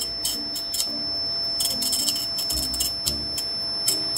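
Digital multimeter's continuity beeper sounding one steady high tone, the sign that the timer switch's contact is closed, over soft background music.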